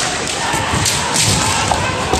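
Kendo in a large hall: several low thuds and sharp knocks from stamping feet on the wooden floor and bamboo shinai striking, over a steady din of the crowd and other matches.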